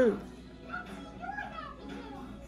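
A woman's spoken word trails off. A pause follows with only a faint pitched background sound, voice-like, about half a second to a second and a half in.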